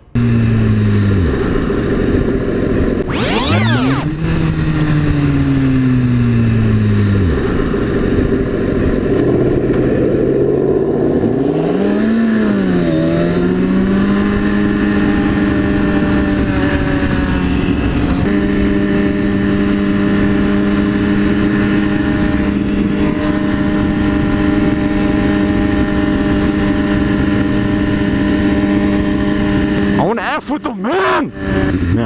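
BMW S1000RR inline-four engine heard from the bike's own camera: the revs fall away twice in the first several seconds, with a short rush of noise about three seconds in. The pitch then rises and dips briefly around twelve seconds in and holds steady at a constant cruising speed for the rest.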